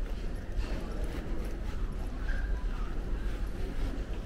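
Footsteps on a hard terminal floor, about two a second, over a steady low rumble, with faint voices of other travellers.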